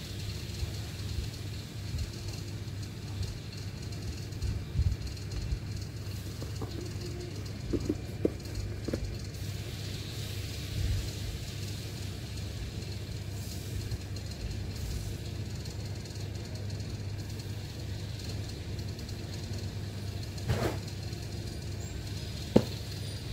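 Steady low background rumble, with a few soft clicks about eight seconds in and again near the end as the tablet is handled.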